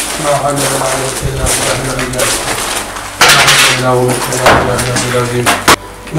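Indistinct speech-like voice with a short loud burst of hiss about three seconds in and a single sharp knock near the end.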